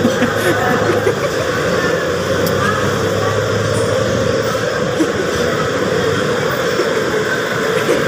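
Steady street noise of motor traffic, with engines running.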